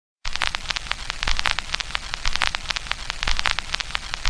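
Crackle of a vinyl record's surface noise: dense, irregular pops and clicks over a low rumble, starting a moment in after a short silence.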